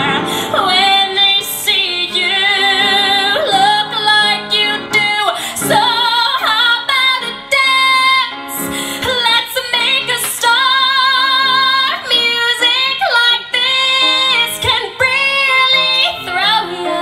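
A woman singing a musical-theatre song into a handheld microphone, holding long notes with a wavering vibrato.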